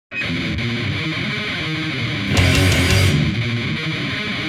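Death metal recording starting abruptly with distorted electric guitars, no vocals yet. It gets louder and brighter a little over two seconds in.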